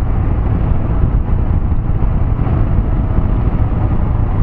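Royal Enfield Himalayan motorcycle running at road speed: its single-cylinder engine is heard under a steady, loud, low wind rumble on the on-board camera microphone.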